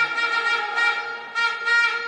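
A horn sounding one steady, buzzy note in two long blasts, with a short break about a second and a quarter in.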